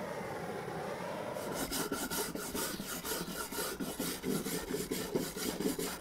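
Wire brush scrubbing back and forth over charred, blowtorch-scorched oak, scouring off the loose char. It starts about a second and a half in and goes in quick rasping strokes, about three a second.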